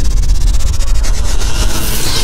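Cinematic intro sound effect: a loud, steady, deep rumble with a fast, even flutter in the highs, like a jet-engine whoosh.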